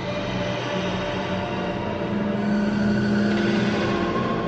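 Ambient sampled intro of a technical death metal track: a dense, rumbling drone with sustained low tones that slowly grows louder.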